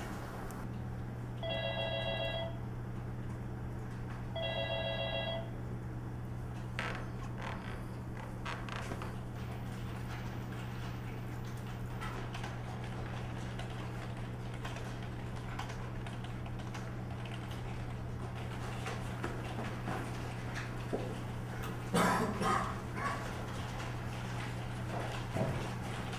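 Electronic telephone ringing twice, each ring about a second long and about three seconds apart, over a steady electrical hum. Near the end come a few knocks and rustles.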